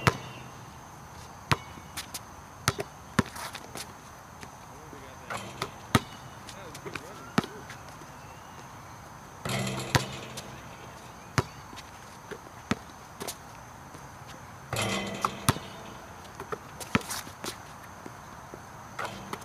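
A basketball bouncing on an outdoor asphalt court as it is dribbled: sharp single bounces at irregular spacing, some in quick runs.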